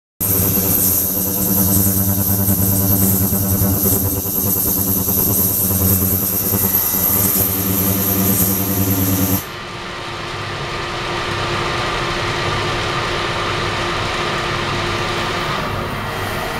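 Ultrasonic cleaning tank running: a steady machine hum with an even high hiss above it. About nine and a half seconds in, the low hum and the hiss cut off suddenly, leaving a quieter, steady noise.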